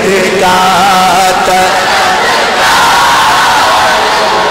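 Naat recitation: a man's voice chanting in long, wavering held notes.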